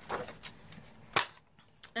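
Soft rustle of packaging being handled, then a single sharp click about a second in, as the boxed powder foundation is pulled out of its wrapping.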